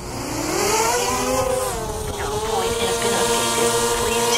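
DJI Mavic Mini quadcopter's motors and propellers spinning up for takeoff: a buzzing whine that rises in pitch over the first second, dips briefly, then settles into a steady hover tone.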